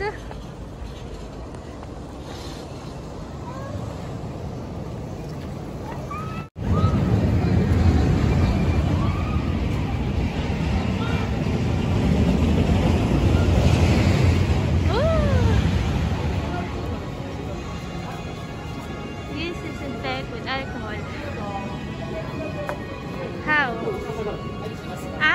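Outdoor ambience: a steady low rumble with scattered voices and some music. The sound drops out abruptly about six and a half seconds in, then comes back with the rumble louder for several seconds before it settles.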